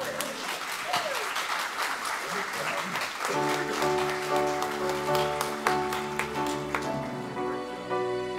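Congregation applauding in a sanctuary, the clapping thinning out over the last seconds. About three seconds in, soft piano music begins and continues under it.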